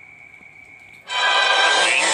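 About a second of low room tone with a faint, thin steady whine, then an anime episode's soundtrack cuts in suddenly and loud: music with a voice speaking over it.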